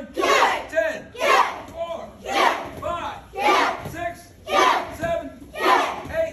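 A class of karate students shouting together in unison, about once a second, each shout on a drilled punch or kick.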